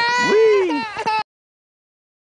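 A toddler's high-pitched vocalising, a short squeal with a rising-then-falling pitch, which cuts off suddenly a little over a second in, leaving silence.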